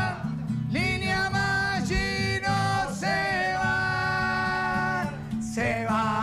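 A man singing long held notes over a steady musical backing, the close of a lively farewell song. The held notes end about five seconds in.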